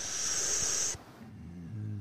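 A person's drawn-out hiss of breath, like air sucked or blown through the teeth, lasting about a second. A low hum of a voice starts near the end.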